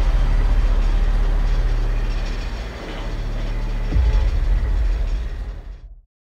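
A deep, low rumble that eases off about halfway, returns with a sudden heavier hit about four seconds in, and fades out just before the end.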